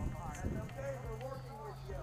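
Indistinct voices calling out at a distance, with a few irregular sharp clicks and a steady low hum starting partway through.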